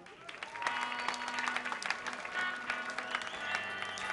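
Audience applauding and cheering in a club; the clapping builds about half a second in and carries on, with some long high tones through it.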